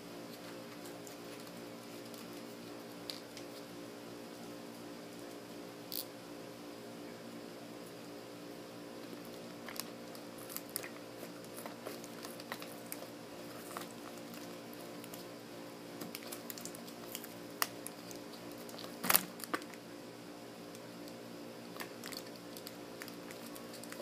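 Quiet steady hum with scattered small clicks and taps, and one sharper click late on.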